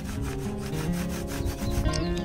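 A paint roller rubbing over a stretched canvas as it spreads black paint, in a run of repeated rasping strokes, with background music playing underneath.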